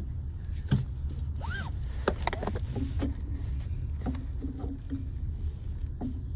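Steady low rumble with a few sharp clicks and faint, distant voice fragments.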